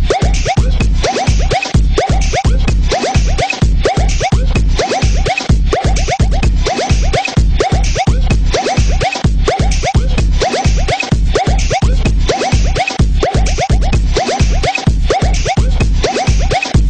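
Minimal electro dance music: a steady, fast bass-drum beat with short synth sounds that slide down in pitch, repeating several times a second.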